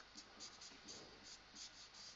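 Marker pen writing on a whiteboard: faint, short strokes of the felt tip, about four a second.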